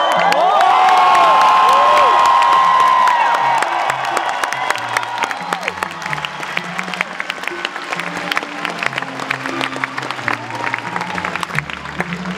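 Live cellos playing slow, low sustained notes, amplified in a concert hall, under a loud audience. The crowd cheers, whoops and whistles loudest in the first few seconds, then carries on with scattered clapping as the cellos keep playing.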